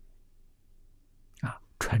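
Near silence with faint room tone for about a second and a half, then a man resumes speaking in Mandarin.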